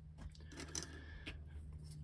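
Faint handling of small resin model-kit parts: a few light clicks and a soft rustle as one piece is put down on a cutting mat and another picked up, over a low steady hum.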